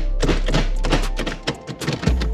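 A billet short-throw shifter being snapped quickly back and forth through the gears, a rapid run of metallic clicks and clunks that thins out near the end.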